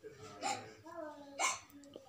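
A person's voice: short spoken utterances, with sharp breathy catches about half a second and a second and a half in.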